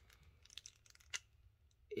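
Faint light clicks of a small plastic toy figure being handled and turned in the fingers, with one sharper click a little past the middle.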